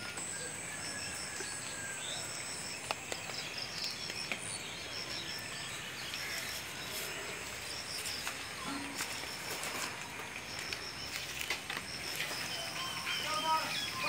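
Quiet outdoor ambience over floodwater: a steady background hiss with repeated short, high chirps, and a thin high whine for the first few seconds. Faint voices come in near the end.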